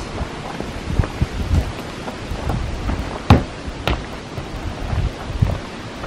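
Footsteps on loose bark chippings over low wind noise on the microphone, with a few sharper knocks a little past halfway.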